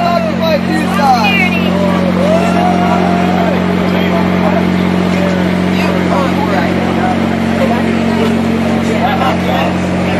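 A steady low engine hum, as from the generator of a portable light tower, runs throughout. Indistinct voices talk over it.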